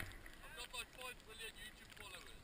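Faint voices of people chatting, over a low rumble.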